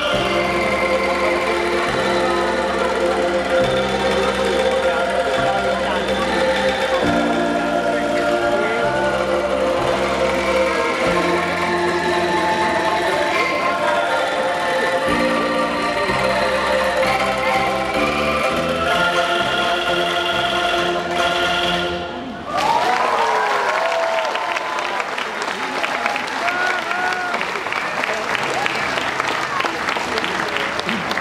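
Bamboo angklung ensemble playing a piece, with sustained low bass notes underneath. The music stops about 22 seconds in, and audience applause and cheering follow.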